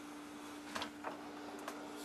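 Faint steady hum of an open refrigerator, with a few soft clicks about a second in as a hand moves among the glass bottles inside.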